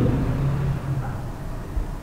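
Steady low hum and faint hiss of the microphone's background noise, with no distinct event; the hum is a little stronger in the first second.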